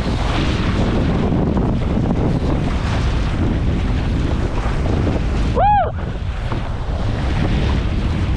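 Wind buffeting an action camera's microphone over water splashing along a Laser dinghy under sail. About five and a half seconds in comes one short pitched squeak that rises and falls.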